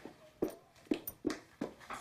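A woman whimpering and sobbing in short catching breaths, about five in quick succession.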